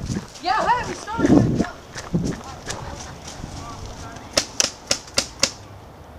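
Voices calling out, then a paintball marker firing a quick string of five shots, about four a second, near the end.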